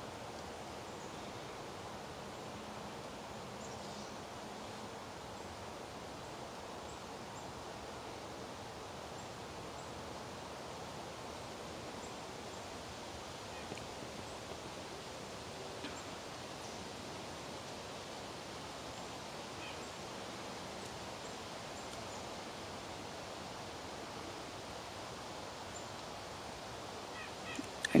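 Steady, faint outdoor background noise in woodland: an even hiss, with two faint ticks around the middle.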